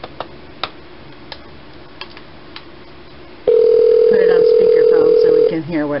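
A few faint clicks, then a telephone ringback tone sounds once for about two seconds through a phone's speaker, the call ringing at the other end; a voice begins just after the ring.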